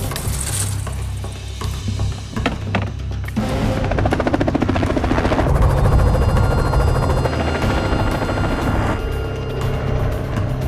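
Helicopter rotor chopping in a fast, even beat, growing louder about three seconds in, over background music.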